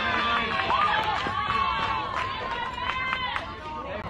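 Several voices of softball players and spectators shouting and calling out over one another during a play, with one long held shout from about a second in.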